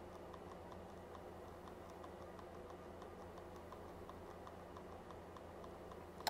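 Faint, evenly spaced clicks at about four a second: a handheld two-way radio's menu key being pressed over and over to scroll down a list.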